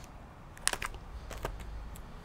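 A few light clicks and taps as a vinyl LP jacket is handled and set down on a counter, the sharpest about two-thirds of a second in.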